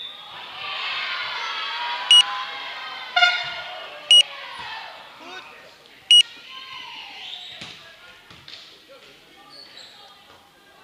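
Players and bench in a sports hall shouting and cheering together through a volleyball rally. Three short, shrill, identical tones sound exactly two seconds apart. Later come scattered sharp knocks from ball hits and footwork on the court floor.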